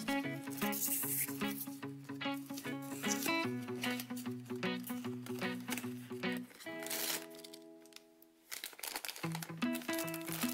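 Background music with cardboard and plastic packaging crinkling and rustling as a blind box is opened and the sealed bag inside is pulled out. The music holds a chord and briefly drops out about eight seconds in.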